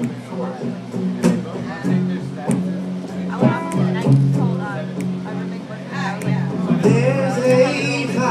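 Live guitar music playing in a bar, with people talking over it.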